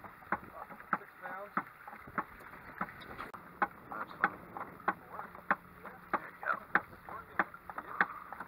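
Boat thumper's rubber mallet knocking on the hull: sharp single knocks, one to two a second at uneven spacing, the device's rhythm for drawing fish under the boat. A low steady hum comes in a few seconds in.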